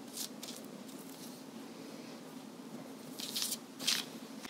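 A silicone pastry brush dabbing and stroking melted butter onto raw pie dough: a few soft, short swishes, the clearest ones near the end.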